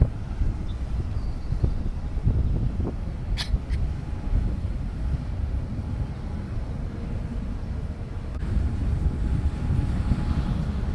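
Low, uneven rumble from a large freighter's engines and propeller wash as it turns at close range, mixed with wind on the microphone. Two short, high sounds about three and a half seconds in.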